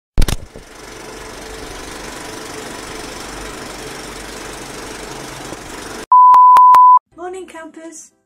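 Old film countdown-leader sound effect: a sharp pop, then a steady projector-like rattle and hiss for about six seconds, ending in a loud steady beep that lasts about a second.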